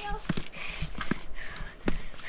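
Footsteps climbing stone stairs: irregular hard knocks of boots and ski pole tips striking the steps, about half a dozen in two seconds, with softer scuffing noise between.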